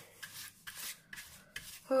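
Bristle paintbrush loaded with paint being brushed across cardboard: about four short, scratchy strokes.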